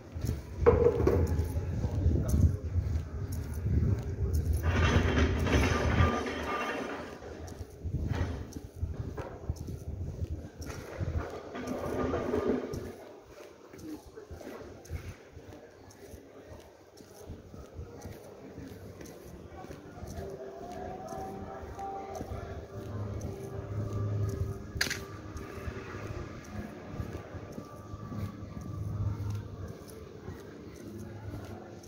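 Street ambience: indistinct voices and snatches of music, louder in the first few seconds with a low rumble, then quieter.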